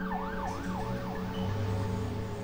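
Emergency vehicle siren sweeping quickly up and down in pitch, a little over two cycles a second, fading out near the end.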